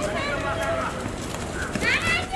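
Players' voices calling out across a field hockey pitch, with light knocks of a hockey stick on the ball.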